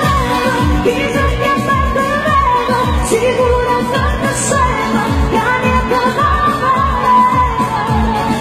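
A woman singing a Neapolitan neomelodic pop song live into a microphone, backed by a band with a steady kick-drum beat.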